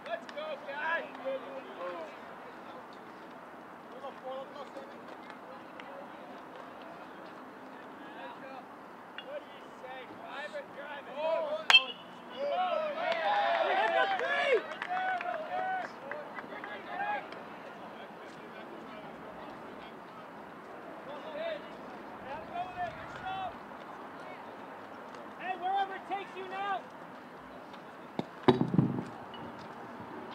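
Players and spectators call out across a baseball field. About twelve seconds in, a metal bat hits the ball with a sharp ping, and a few seconds of cheering and shouting follow.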